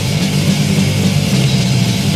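Thrash metal band playing an instrumental passage with no vocals: distorted electric guitars, bass and drums on a lo-fi 1986 demo recording.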